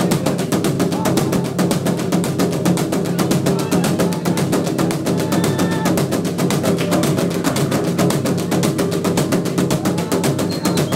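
Fast, steady drumming accompanying a Zulu dance performance, loud and unbroken.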